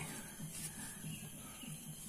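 Quiet background ambience: a faint, steady hiss with no distinct knock or mechanical event.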